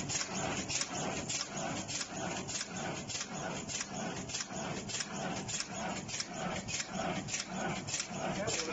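Pharmaceutical packing machine with a desiccant sachet inserter running in a steady cycle. A sharp click and a mid-pitched clack repeat about every 0.6 seconds.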